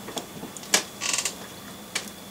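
Handling noise between sentences: a few light clicks and a short hiss as two small die-cast model cars are moved and lowered.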